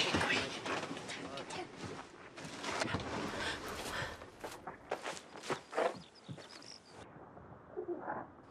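Hurried rustling and knocking of clothes, bedding and cupboard contents as two people scramble about inside a caravan. It stops abruptly about seven seconds in.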